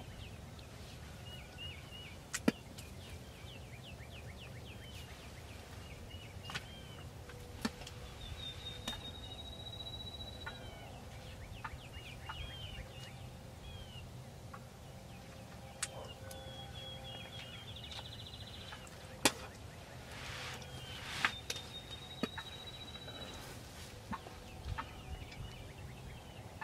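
Wild turkeys calling in a field: short repeated calls and scattered gobbles from a flock of jakes and toms, with longer rising whistles from other birds twice, and sharp clicks now and then.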